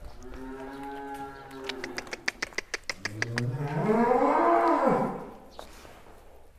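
A large bull mooing: a lower, steady moo at the start, then a quick run of sharp clicks, then a louder, longer moo that rises and falls in pitch.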